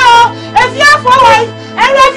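A woman crying out for help in a very high-pitched, wailing voice, in repeated short calls, over sustained background music.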